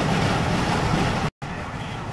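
Road and engine noise inside a moving car, a low steady rumble. About a second and a quarter in, it cuts out for an instant at an edit and resumes a little quieter.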